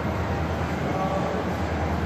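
N scale model freight train's cars rolling along the track past the microphone, a steady rumble, over the low hum of a large exhibition hall.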